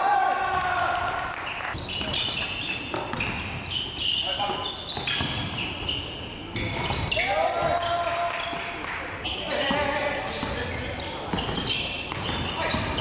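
Live basketball game sound on a hardwood court: the ball bouncing, with players' voices calling out between the bounces.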